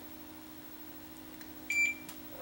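Digital multimeter in diode-test mode giving one short, high beep near the end: continuity between the probed ring of the 3.5 mm AV plug and the yellow RCA lead.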